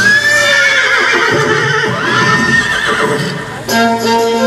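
Horse whinnying twice, each call rising and then falling in pitch. It is played over the show's sound system as part of the soundtrack. Music returns near the end.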